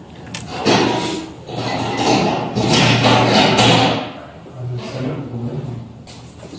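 A heavy door being moved, a loud clattering and scraping from about half a second in to about four seconds, then dying down.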